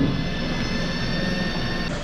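Lely robotic milking box running: a steady mechanical hum with several high, steady whining tones over it, cutting off just before the end.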